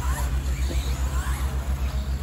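Radio-controlled 4WD buggies racing on a dirt track: faint, short rising and falling motor whines over a loud low hum that pulses about eight times a second.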